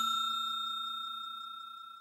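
Bell ding sound effect ringing out: one held chime with a few steady overtones, fading away evenly.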